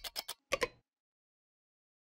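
Ticking sound effect for an animated logo: a few quick ticks slowing down, then one last louder click about half a second in, after which the sound cuts off.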